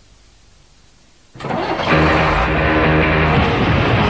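A low hiss, then about a second and a half in loud heavy rock music with electric guitar cuts in suddenly.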